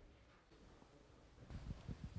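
Near silence: room tone, then faint, irregular low bumps starting about a second and a half in.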